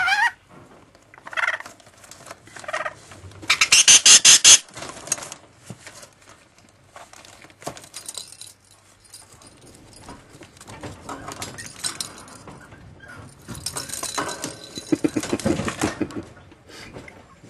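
Rainbow lorikeet's short squawks, starting with a rising one, and a loud harsh rattling burst about four seconds in. Scuffling, clicks and clatter of the bird tumbling about with a plastic ladder and toys follow, growing noisy again near the end.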